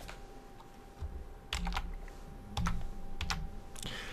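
Typing on a computer keyboard: about half a dozen separate keystrokes, scattered in small clusters through the second half.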